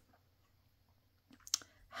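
A quiet room, then a few short, faint clicks in the second half.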